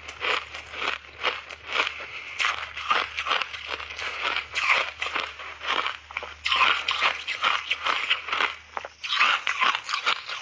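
Chunks of refrozen ice crunched between the teeth in rapid, irregular chews, several crunches a second.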